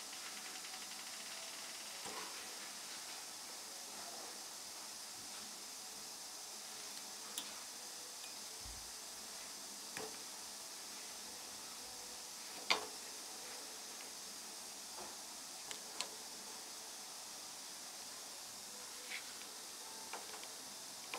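Steady background hiss with a few faint, scattered clicks of steel suturing instruments, a needle holder and tweezers, handling suture thread on a plastic dental model. The sharpest click comes a little past the middle.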